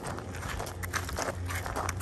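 Footsteps crunching on loose gravel, an irregular run of short crunches.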